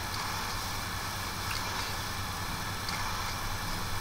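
Quiet room tone: a steady low hum with an even hiss and no distinct events.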